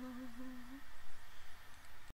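A man's voice holding one low hummed note that wavers slightly and fades out, stopping just under a second in, followed by faint room noise.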